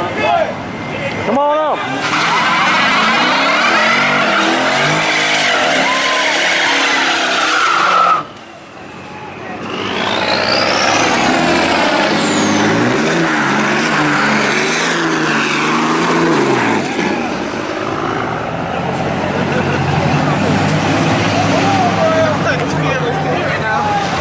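A Dodge Charger's engine revving hard with tyres squealing in a burnout. After a sudden cut, a lifted Dodge Ram pickup's engine revs up as it spins its tyres on the wet street and pulls away. Crowd voices run underneath.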